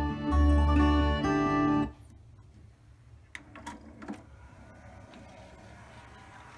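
Acoustic guitar music playing through the stereo from the NAD 523 CD changer, cut off abruptly about two seconds in. What follows is quieter: a few mechanical clicks and a faint motor whir as the changer's belt-driven carousel drawer opens, its drive belt just replaced.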